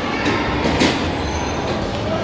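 Steady rumbling running noise of a moving vehicle, with a brief clatter a little under a second in.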